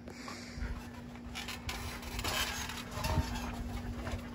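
Faint shuffling and soft thumps of two wrestlers moving and getting up on a trampoline mat, louder in the second half.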